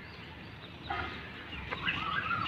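Short bird calls over a low outdoor rumble, one about a second in and a few more near the end.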